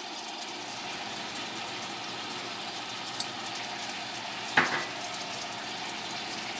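Sliced hot dogs and diced onion frying in melted butter in a saucepan: a steady sizzle. There is a faint click about three seconds in and a brief knock about a second and a half later.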